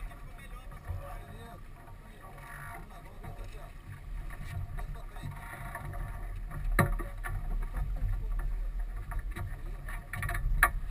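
Wind rumbling on the microphone and water along the hull of a sailing yacht under way, with one sharp knock about seven seconds in.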